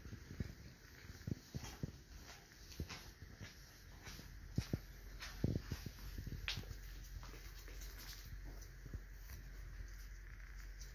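Handling of a Sager traction splint as an ankle harness strap is looped onto the hook at its bottom end: a scattered run of light clicks and knocks from the splint's metal and plastic parts, loudest around the middle.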